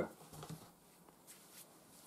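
Near silence with faint handling noises: a soft low thud and a few brief light ticks and rustles from the cardboard packaging of a laptop box being handled.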